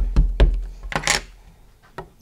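Embossing Magic anti-static pad tapped over cardstock, a few quick soft taps, then a brief louder rustling swish about a second in.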